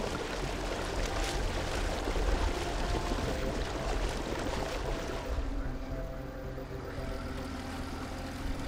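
Honda 90 four-stroke outboard motor running under way, its low drone mixed with the rush and splash of the hull and wake through the water. The hiss of the water eases in the second half.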